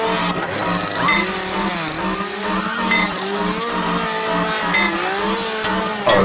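Instrumental passage of a dark trap track: gliding, pitch-bending synth lines over a pulsing bass note, with no vocals. Hi-hats come in near the end.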